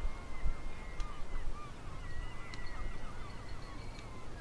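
Seabirds calling in a string of short, quick notes, over a low background rumble.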